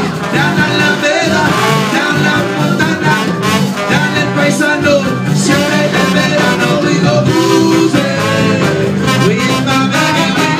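Live band playing, with a brass horn carrying the lead over guitar and a steady, evenly repeating bass line.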